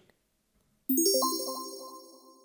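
A chime sound effect: a bright ding about a second in, with a quick upward sweep, ringing and then fading away.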